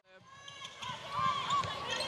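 Indoor netball court sound fading in from near silence: low thuds of players' feet and the ball on the court, getting stronger toward the end, with faint voices in the arena.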